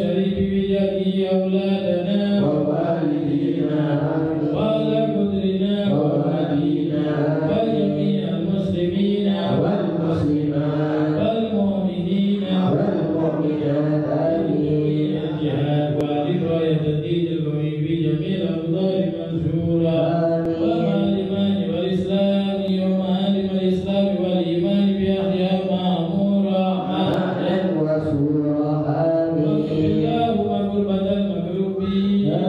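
Men chanting an Arabic dhikr litany together, one voice leading through a microphone. The melodic chant runs on without a break.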